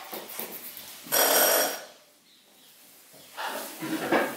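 Quick rasping strokes of a nail file on fingernails, then about a second in a bell rings once, briefly and loudly. Near the end come a few louder handling sounds as hands are set down on the counter.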